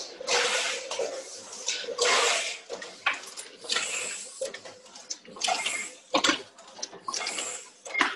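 Letterpress printing press running cards, with a noisy clatter roughly once a second over a faint steady hum.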